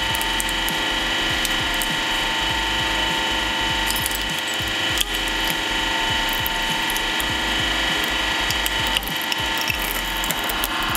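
Hydraulic press running with a steady whine as its ram bears down on a broken snow globe and its figurine house base, with small crackles and clicks of the material giving way and a sharper crack about five seconds in.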